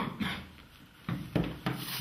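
A man coughing: a loud cough fading at the start, then three short rough coughs in the second half.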